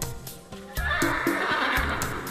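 A horse whinnying, starting about a second in, over background music with a steady beat.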